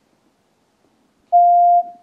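A single steady electronic beep, one pure mid-pitched tone about half a second long that starts about a second in and stops sharply, leaving a brief fading tail. It is a sample stimulus from a timing-perception task in which people reproduce how long a beep lasted.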